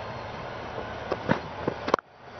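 Steady background noise from the cricket ground's field microphones, with a few short, sharp sounds in the second half. It cuts off suddenly at the end.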